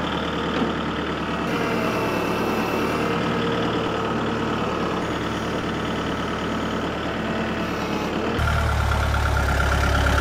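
Kubota compact tractor's diesel engine running steadily while it works a front loader; the engine gets louder and deeper about eight seconds in.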